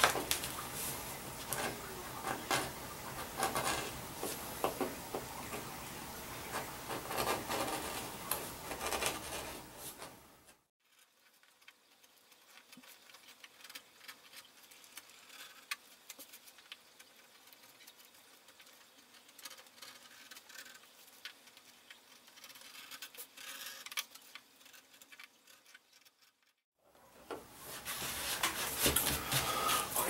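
Leather edge beveler shaving the edges of a leather piece: repeated short, faint scraping strokes. About a third of the way in the sound drops to near silence with only occasional faint scrapes, and the strokes resume near the end.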